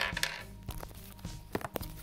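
A few sharp clicks and knocks of a plastic clip-on phone lens being fitted over the phone's camera, the loudest right at the start, over background music.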